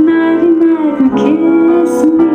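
A woman singing a long held note over grand piano accompaniment; the note wavers, dips briefly about a second in, then settles back.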